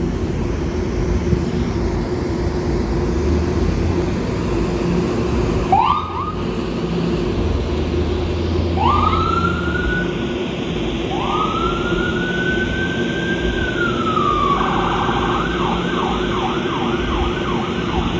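Ambulance siren starting up: a short rising chirp, then two rising wails, the second one long, then a switch to a fast yelp near the end. A steady low hum and engine rumble run underneath.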